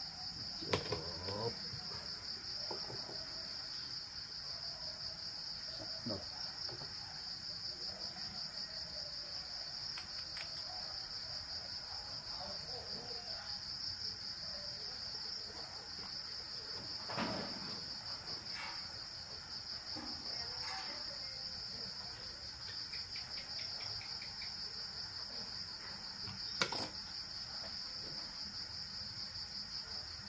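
A steady chorus of crickets trilling on one high pitch throughout. A few light clicks and knocks from parts being handled on the workbench break through, the clearest about 17 and 27 seconds in.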